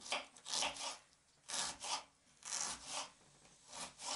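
Kitchen knife slicing an onion into thin half-rings on a wooden cutting board: about six short, separate slicing strokes with pauses between them, each ending against the board.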